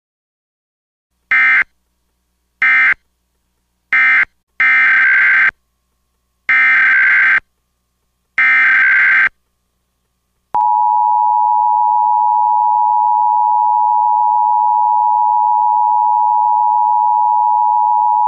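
Emergency Alert System signalling tones: three short warbling data bursts (the end-of-message code closing the alert), then three longer warbling bursts (the SAME header opening a new alert), then the steady two-tone EAS attention signal held for about eight seconds.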